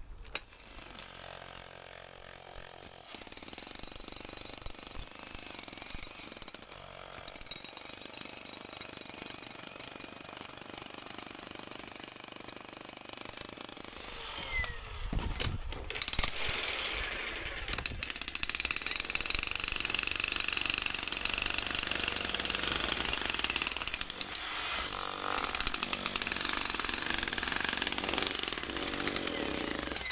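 Electric demolition breaker hammering continuously into old concrete foundation that is 300 mm thick and reinforced with steel mesh. It gets louder about halfway through.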